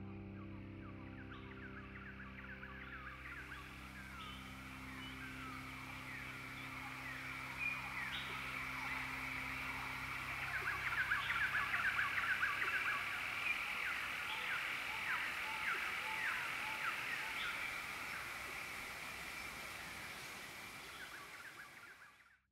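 Many birds chirping over a steady high hum, while a held low chord from the music fades out in the first half. Everything fades away at the very end.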